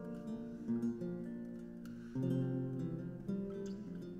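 Early-Baroque instrumental introduction on plucked strings, with chords strummed and plucked and changing about every second.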